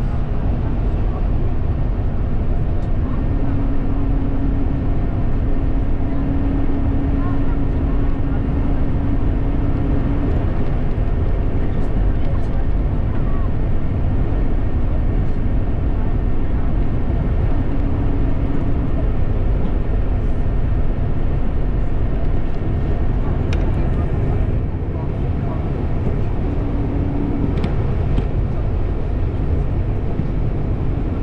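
Steady road and engine noise of a moving car, heard from inside the cabin, with a low hum that comes in and out a few times.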